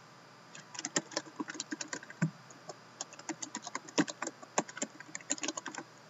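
Typing on a computer keyboard: quick, irregular runs of key clicks, broken by a short pause a little over two seconds in.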